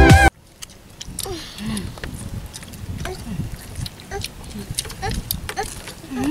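Music cuts off abruptly right at the start, giving way to quiet sounds of people eating on the ground: scattered light clicks and rustles of hands and food, with brief murmurs and vocal sounds from small children.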